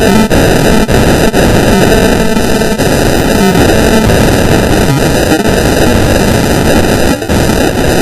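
Extremely loud, heavily distorted electronic music: a novelty pop song buried in harsh, clipped noise by stacked audio effects, running almost without pause with one brief dropout near the end.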